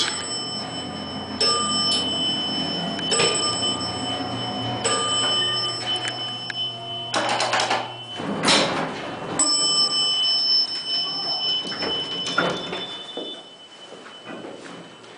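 Elevator car running with a low steady hum and thin high whines; the hum stops about eight seconds in as the car arrives, followed by a couple of louder noisy rushes as the doors slide open, then quieter lobby sound.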